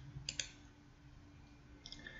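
A few faint computer mouse clicks: a quick pair about a third of a second in and a softer one near the end, over a faint steady hum.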